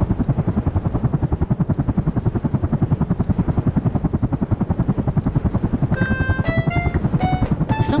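Helicopter rotor sound effect: a steady, rapid chop that goes on throughout. A few short melody notes come in near the end.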